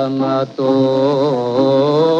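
Singing from a 1954 Greek rebetiko record: a voice holds long notes with a wide vibrato, breaking off briefly about half a second in, over bouzouki and guitar accompaniment.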